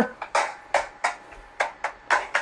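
About five short taps or clicks, irregularly spaced, each dying away quickly, with quiet in between.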